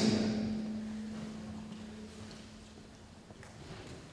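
A pause in a talk: a low steady hum fades away over the first two seconds or so, then a few faint taps near the end.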